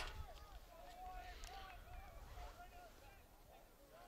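Faint, distant voices calling out across an outdoor sports field: players and spectators shouting while a corner kick is set up. A sharp click sounds right at the start.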